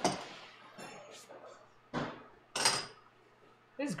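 Kitchen utensils and cookware being handled: a few separate clanks and clinks, the first at the very start and two more around the middle, with quiet between.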